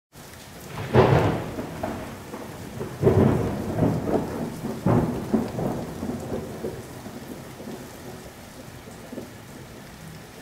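Thunderstorm: three claps of thunder about two seconds apart, each rumbling away, over a steady hiss of rain.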